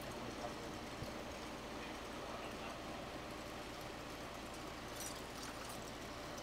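Steady hiss of a Carlisle CC glassworking torch flame burning at the bench, with a few faint light clicks of glass about five seconds in.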